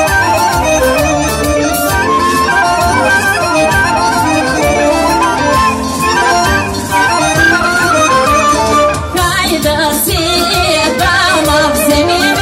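Bulgarian folk band playing a Strandzha folk melody, loud and without a break through the loudspeakers, with a singer's voice coming in near the end.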